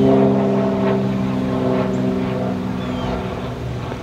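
An engine running steadily at one speed, giving a low, even droning hum that fades slightly near the end.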